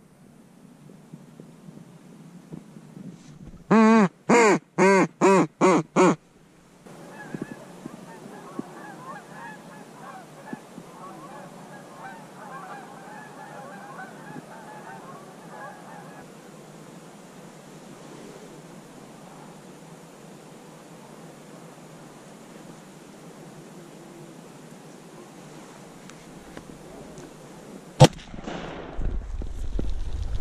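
Goose honking: six loud honks in quick, even succession a few seconds in, followed by about ten seconds of fainter, more distant goose calls. A single sharp click sounds near the end.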